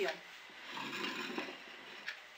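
Faint rubbing and handling noise with a light click about one and a half seconds in.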